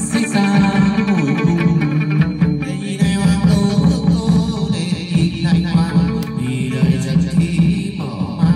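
Chầu văn ritual music led by a plucked moon lute (đàn nguyệt), playing a continuous rhythmic melody.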